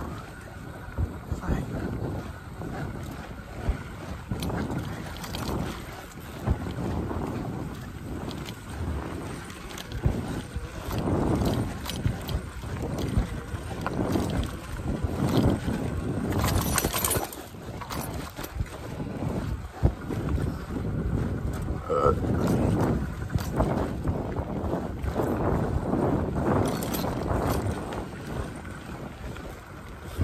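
Wind buffeting the microphone over the rumble of an electric mountain bike's tyres on a dirt trail, with irregular knocks and rattles as the bike rides over bumps.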